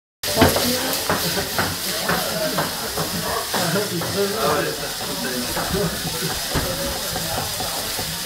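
Whole king prawns frying in hot oil in a wok: a steady sizzling hiss broken by frequent short crackles.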